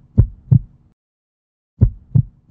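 Heartbeat sound effect: deep, low thumps about a third of a second apart. Two come in the first half second, then a pause, then another near the end.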